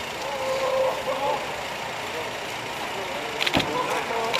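A Volkswagen estate car idling at a standstill, then a car door shut with a single thump about three and a half seconds in.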